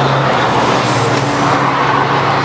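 Road traffic: a steady engine hum with the rushing tyre noise of a vehicle passing, loudest about a second and a half in.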